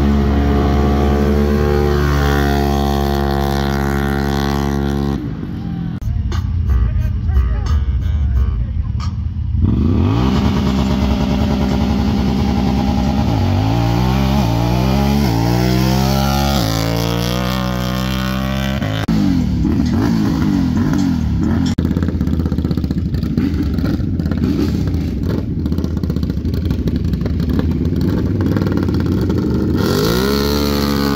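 Side-by-side UTV engines: a steady held engine note for about five seconds, then, after a muffled break, engines revving up in a series of rising pitch sweeps, and busier engine noise after that.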